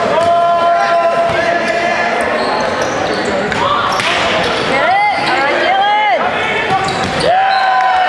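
Volleyball rally in a gym, with the hall echoing: sharp ball contacts and sneaker squeaks on the hardwood floor. Players and spectators call out and shout several times.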